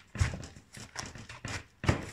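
Kitchen knife cutting through a head of white cabbage on a plastic cutting board: a series of crunching cuts and knocks of the blade on the board, loudest just after the start and near the end.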